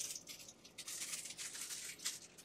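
A packaging bag rustling and crinkling in the hands as a small tool is pulled out of it.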